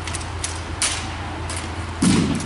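Drill team's rifles being handled in unison: a few sharp slaps and clacks of hands striking the rifles, about four in two seconds, the loudest a little before the middle.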